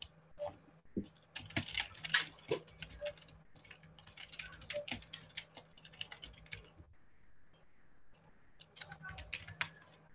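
Typing on a computer keyboard: quick runs of keystrokes, a pause of about two seconds near the end, then one last short run.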